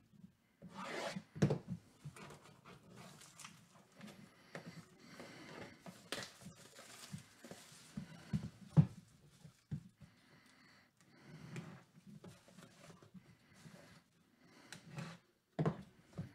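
Plastic shrink-wrap being torn and peeled off a sealed cardboard box: irregular crinkling and rustling, with a few sharper snaps.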